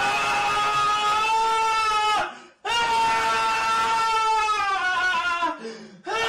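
Two long wailing cries by a person's voice, each held at a steady pitch for about two seconds before dropping off, with a short break between them.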